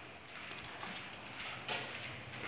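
A pit bull's claws clicking on a tiled floor as it trots, a few irregular clicks.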